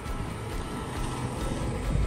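A rushing noise that swells and peaks near the end, with background music carrying on underneath.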